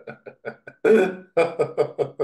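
A man laughing: a run of short pulses that trails off, a louder burst about a second in, then another quick run of pulses.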